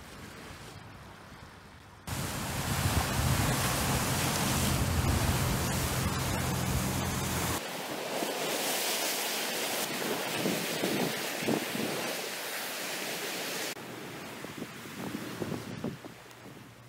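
Lake waves washing and breaking against an icy rocky shore, a steady rushing surf. Wind buffets the microphone with a low rumble through the first half, which stops abruptly at a cut about halfway in; the sound drops away again near the end.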